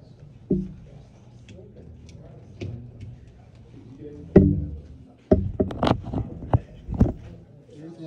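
Several sharp knocks and thumps: one about half a second in, a louder one past four seconds, then a quick run of knocks between about five and seven seconds in. Faint low voices murmur underneath.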